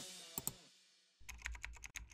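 Background music fading out, then two sharp clicks and, from just past a second in, a rapid run of computer keyboard typing clicks: a typing sound effect as a web address is entered in a search bar.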